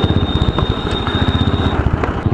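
Motorcycle engine with an aftermarket exhaust running at low speed in traffic, with a rapid, even exhaust beat.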